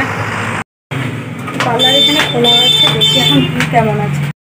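People talking over a steady low hum, with a high, steady beeping tone for about a second and a half in the middle, broken once. The sound drops out completely for a moment before the first second.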